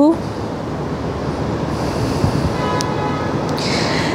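Steady outdoor background rush of city noise, with a faint brief pitched tone about three seconds in.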